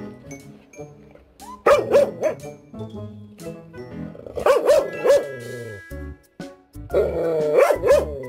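Jindo dog barking in three short bouts of quick calls, over background music.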